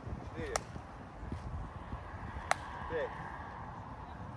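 Two sharp hand claps about two seconds apart, one for each rep of explosive clap push-ups done against a tree trunk.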